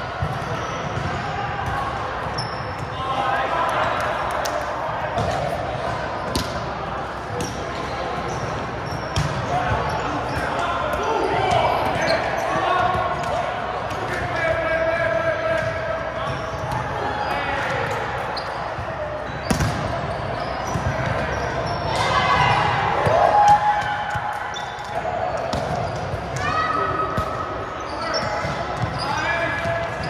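Indoor volleyball rally in a large gym hall, echoing: players calling and shouting, with sharp smacks of hands on the ball and short high squeaks of shoes on the hardwood floor.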